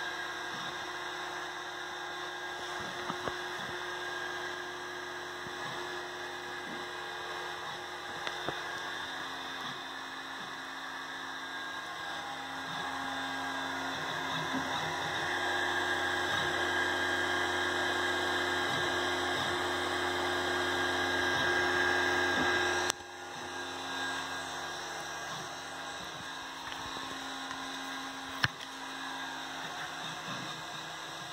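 Stepper motors of a homemade laser plotter, driven by DRV8825 drivers, whining with steady tones as the gantry moves. The whine gets louder through the middle, drops sharply about three quarters of the way through, then goes on more quietly.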